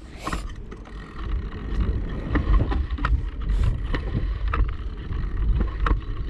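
Wind rumbling on a bicycle-mounted GoPro's microphone as the bike rides along, with frequent sharp clicks and rattles from the bicycle jolting over the path.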